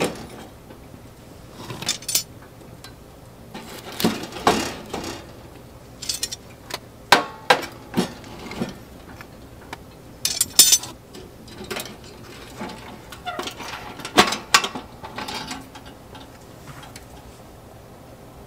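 Irregular metallic clanks and knocks at a small steel camping wood stove as its burning compressed-firewood logs are shifted about, coming in clusters every couple of seconds and dying away near the end.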